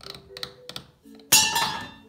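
A few light taps, then a sudden, loud, harsh cockatoo screech about halfway through that fades within about half a second.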